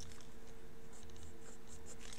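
Pen scratching on paper in a few short strokes while sketching, with the hand drawing curved outlines.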